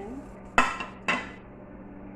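Two clatters about half a second apart, the first about half a second in, as a plate of chopped onion, tomato and ginger is tipped into a pot of water.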